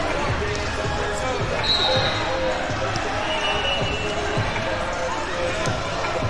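Busy wrestling-tournament hall: many people talking at once, with frequent low thuds of bodies and feet on the mats. Two short referee whistle blasts sound from the floor, about two seconds in and again about three and a half seconds in.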